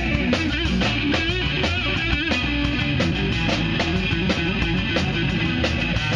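Live rock band playing: electric guitar over bass guitar and a steady drum-kit beat, with wavering bent guitar notes in the first couple of seconds.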